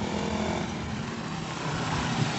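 Steady outdoor street noise with a motor engine running somewhere near, holding at an even level.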